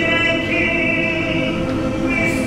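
Male choir singing in several parts, holding sustained chords.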